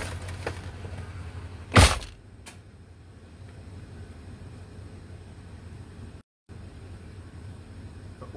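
A single loud thump about two seconds in, over a steady low hum that fades after it. The sound cuts out briefly about six seconds in.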